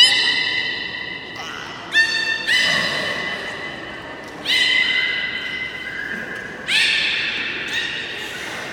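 Beluga whale calls: a series of about five sudden, steady high-pitched squeals, each fading over a second or two, with faint crowd chatter behind.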